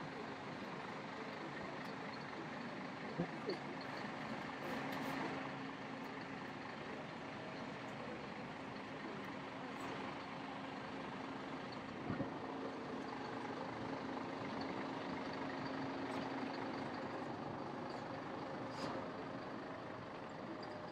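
Coach bus engine idling with a steady hum under general outdoor noise, the hum fading out a few seconds before the end; a few short clicks stand out.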